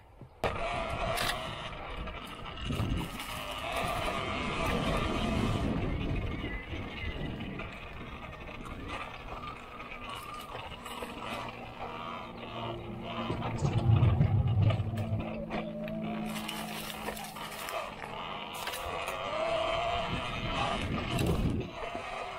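Talaria Sting electric dirt bike being ridden on a dirt trail: a motor whine that rises and falls with speed over tyre and trail noise, with scattered knocks from the rough ground. A louder low drone swells about two-thirds of the way through.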